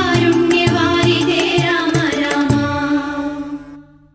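Malayalam Hindu devotional song: singing over a steady drum beat with strokes about every half second, fading out to silence near the end as the song finishes.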